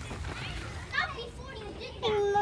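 Children playing and calling out on a playground at a distance, faint voices with a brief louder shout about a second in.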